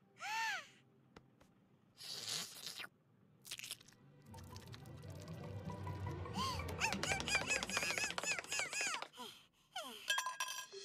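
Cartoon stomach-growl sound effects: a short squeaky rising-and-falling tone near the start and two brief noisy bursts, then from about four seconds a low rumble overlaid with rapid squeaky rising-and-falling chirps, ending about a second before the close.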